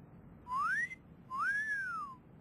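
Two whistled notes: a short one sliding upward, then a longer one that rises and falls back down.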